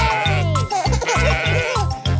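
Upbeat children's nursery-rhyme music with a steady bass beat, and a cartoon sheep bleating over it with a wavering, falling call.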